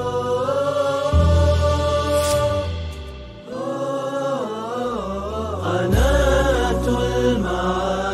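Outro music: a melodic vocal chant with long held notes that bend and waver, over low sustained bass notes that shift about a second in and again near six seconds. The chant dips briefly about three seconds in.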